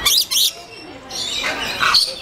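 Lorikeet calling: two short, shrill calls right at the start and another brief call just before the end.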